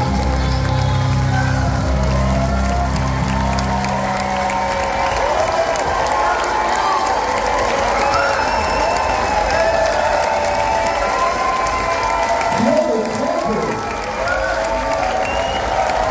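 Festival audience applauding and cheering, with shouts and whoops, as a held low chord from the band stops about four seconds in.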